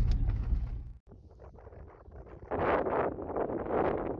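Low rumble of a car driving, heard inside the cabin, cut off abruptly about a second in. Then wind buffeting the microphone in loud gusts from about halfway through.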